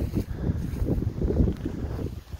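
Wind buffeting the phone's microphone: an uneven low rumble that rises and falls in gusts.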